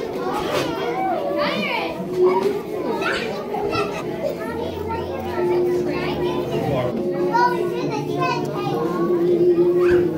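Children's voices chattering and calling over one another in a busy room, with adult talk mixed in; a steady droning tone joins the voices about halfway through.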